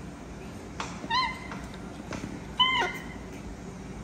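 Baby macaque giving two short, high-pitched calls about a second and a half apart, each rising and then falling in pitch.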